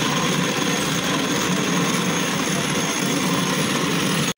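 Cotton candy machine running: a steady, even whir from its spinning head while pink floss is wound onto a stick.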